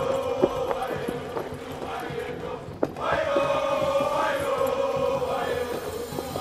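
Dramatic film score: a choir chanting long held notes in two phrases, the second starting about halfway through. A few sharp percussive hits sound over it, one near the start and one just before the second phrase.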